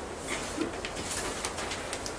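Marker pen writing on a whiteboard: a run of short, squeaky strokes as letters are written.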